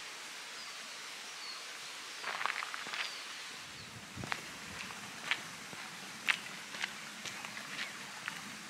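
Footsteps on a tarmac lane, with sharp taps about once a second in the second half, over a steady outdoor hiss and a few faint bird chirps.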